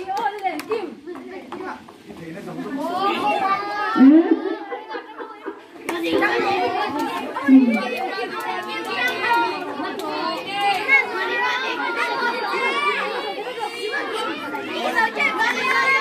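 Many children's voices chattering and calling out at once, thinning briefly a couple of times, then a continuous babble from about six seconds in.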